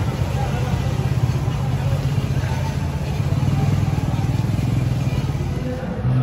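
A steady low engine rumble with faint voices in the background.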